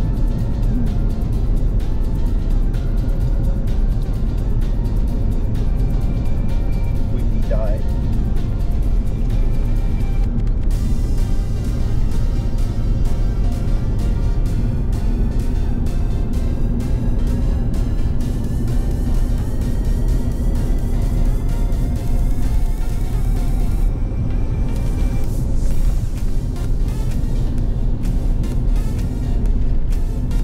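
Steady engine and tyre noise of a vehicle driving along an outback road, heard from inside the cabin, with music playing throughout.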